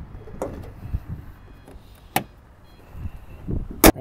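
A car hood being shut: a light click about two seconds in, then a single sharp, loud bang near the end as it latches.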